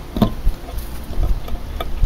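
A garden fork digging into soil, with a few sharp knocks and scrapes of the tines, over a steady low wind rumble on the microphone.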